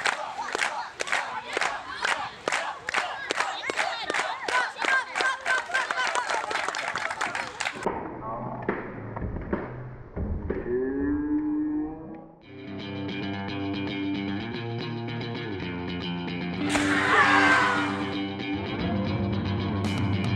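A crowd of campers clapping in a steady rhythm, about three claps a second, with voices over it for the first eight seconds. After a short muffled stretch, background music with guitar starts about twelve seconds in.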